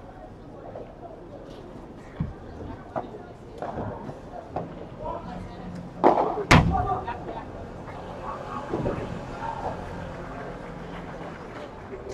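Padel rally: a ball being struck with padel rackets and rebounding off the court and glass walls, a series of sharp hits with the loudest two close together about six seconds in.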